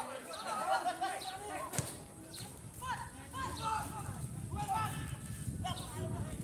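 Several voices calling and shouting across an open football pitch, with a single sharp thump about two seconds in.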